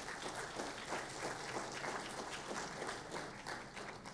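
Audience applauding, many hands clapping steadily and starting to die down near the end.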